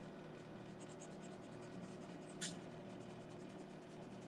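A pencil scratching on drawing paper in quick, short strokes, with one sharper scrape about two and a half seconds in.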